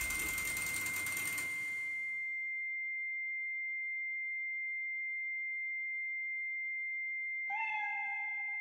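A steady, high-pitched electronic ringing tone held throughout, a film sound effect, with a hiss under it that fades away in the first two seconds. Near the end a lower tone with overtones comes in with a short upward slide and then holds.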